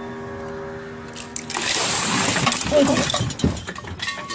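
A steady hum, then about two seconds of ice water dumped from a cooking pot, splashing down with clinks of ice, and a short cry of "oh" during the splash.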